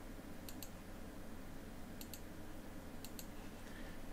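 Computer mouse button double-clicking three times, each a quick pair of sharp clicks, over a low steady hum.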